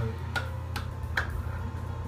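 A person clapping their hands three times, evenly, a little under half a second apart.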